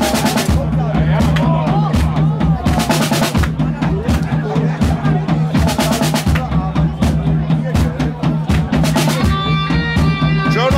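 Live band playing rock music: a drum kit with bass drum and snare hits over a steady bass line and guitar. Sustained higher notes come in near the end.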